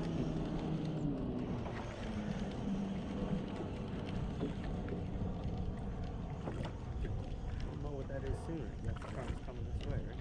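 Steady wind and water noise around a small drifting fishing boat, with a faint low hum in the first few seconds.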